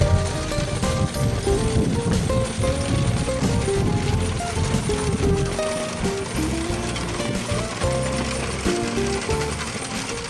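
Background music with a melody of short stepped notes, over a dense low clatter of knocks that thins out about halfway through.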